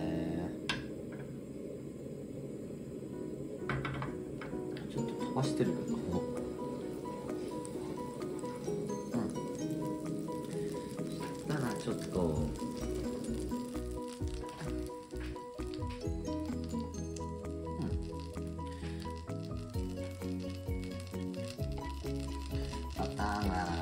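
Butter sizzling and bubbling as it melts in a little salad oil in a nonstick frying pan, under steady background music.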